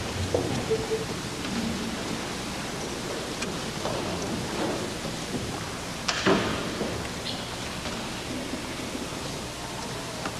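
Hall ambience in the pause between movements of an orchestral concert: steady hiss with faint rustling and small knocks from the players and audience, and one brief louder noise about six seconds in.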